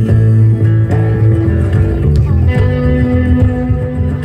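Live band playing an instrumental passage on electric guitar, acoustic guitar and bass, with no singing.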